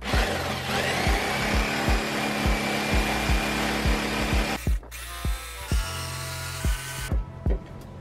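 Corded electric jigsaw cutting through a pallet board, loud. It stops about four and a half seconds in, then runs again briefly for about a second before cutting out.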